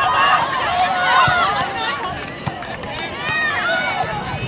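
Several high-pitched voices shouting at once from the sideline of a girls' soccer match, overlapping calls with no clear words.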